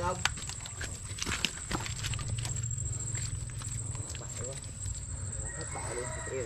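Footsteps through soft mangrove mud and along bamboo poles laid over it, with a few sharp knocks and clicks in the first two seconds over a low rumble.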